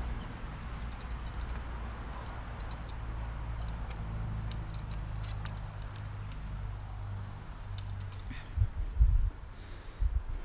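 A metal fan rake dragged through sand, scraping with small ticks of the tines, over a steady low mechanical hum. A few dull low thumps come near the end.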